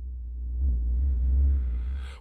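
A low, steady rumbling drone with a faint hum above it, swelling slightly in the middle and fading just before the end.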